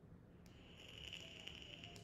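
Near silence: faint room tone, with a faint high hiss that starts with a click about half a second in and cuts off just before the end.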